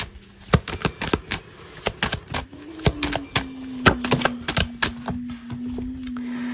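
A deck of oracle cards being shuffled by hand: quick, irregular card clicks and snaps. A low steady hum joins about halfway through.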